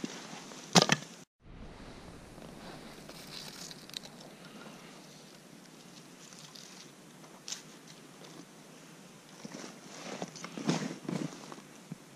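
Split wooden kindling and feather sticks being handled: a sharp knock about a second in, quiet rustling, a single click midway and a short cluster of wooden knocks near the end.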